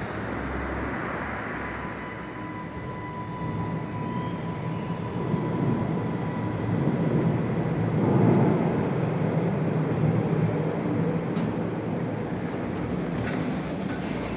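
Station passenger lift running as its car arrives at the landing: a steady mechanical rumble and hum that swells to its loudest about two-thirds of the way through. Near the end come a few clicks as the doors open.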